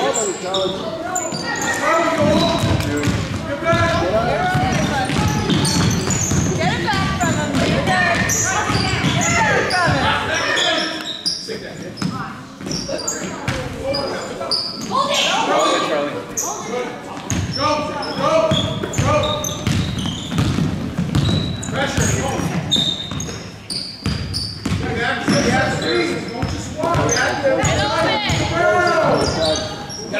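A basketball bouncing on a gym floor, echoing in a large hall, amid the overlapping shouts and chatter of players and spectators.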